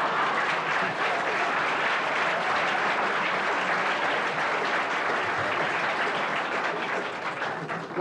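Studio audience applauding steadily, easing off a little near the end.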